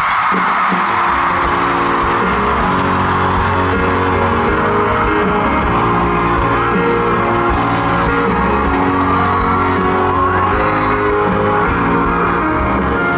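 Music from an arena sound system with a large crowd cheering and whooping over it, heard from among the audience.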